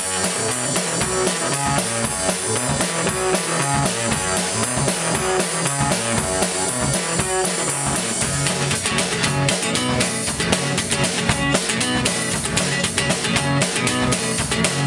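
Acoustic guitar and a Mapex drum kit playing a driving dirty-blues groove. About eight seconds in, the drumming turns busier and brighter.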